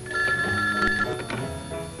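An old desk telephone ringing, a steady ring lasting about a second near the start, over soft background music.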